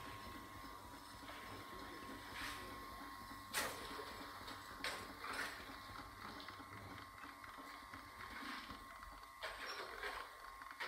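Faint mechanical whirring with a steady high hum, broken by scattered knocks and clatters: a rope hoist hauling a basket of rock up out of a hand-dug well.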